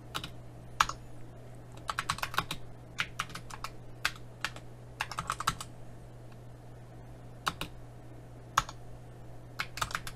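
Computer keyboard being typed in short, irregular bursts of keystrokes with a pause of over a second in the middle, as a command is entered. A faint steady low hum runs underneath.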